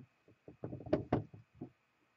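A run of light knocks and clicks from small polish jars and a sponge dauber being handled and set down on a desk, bunched between about half a second and a second and a half in.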